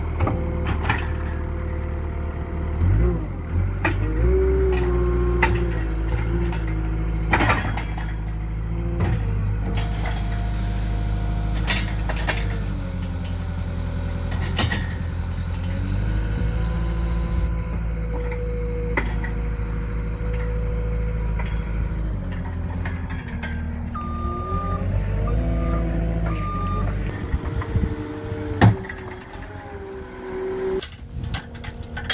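Cat 242D skid steer's diesel engine running as the hydraulics raise and lower the loader arms and a boom attachment, its pitch shifting several times with the hydraulic load. Occasional sharp clanks and knocks come from the machine and attachment. Near the end the engine sound drops away and one sharp knock is the loudest thing.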